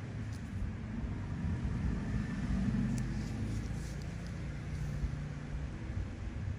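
Low, steady background rumble with a few faint clicks.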